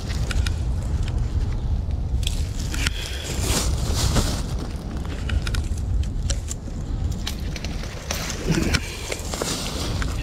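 Wind rumbling steadily on the camera microphone, with scattered crackles and clicks of handling noise.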